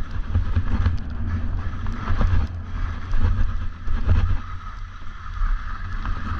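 Wind buffeting a GoPro Hero 8's microphone during a ski run, an uneven low rumble, with the hiss of skis sliding over snow. The ski hiss eases for a second or so about four seconds in.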